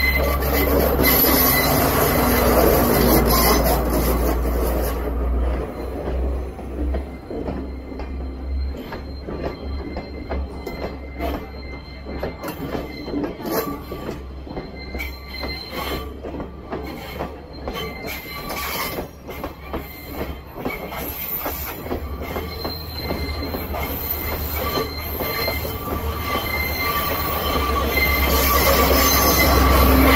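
Sri Lanka Railways Class S14 diesel multiple unit passing slowly at close range. A power car's diesel engine hums loudly at first and again near the end as the rear power car comes by. In between, the carriage wheels clatter over the rails and a thin high squeal comes from the wheels on the curve.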